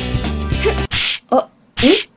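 Children's background music that cuts off about a second in, followed by three short hissy cartoon sound effects, each with a quick upward squeak.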